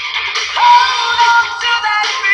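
Singing over music: a voice slides up into a long held note a little after half a second in.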